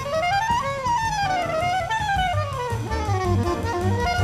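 Soprano saxophone playing a jazz melody that climbs for about a second, then winds down and back up in quick steps, over a drum kit. Low double bass notes join about halfway through.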